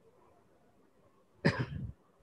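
A single short cough about one and a half seconds in, after a stretch of quiet room tone.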